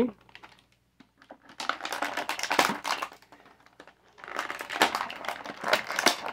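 Stiff clear plastic packaging crinkling and crackling as an action figure and its accessories are worked out of the tray, in two spells of a second or two each.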